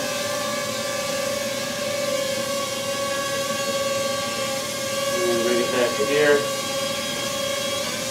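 Ryze Tello mini quadcopter hovering, its four small propellers making a steady, unbroken whine.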